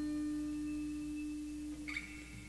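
Acoustic guitar ringing out after a strum: one steady note with faint overtones slowly fading. A faint short sound comes near the end.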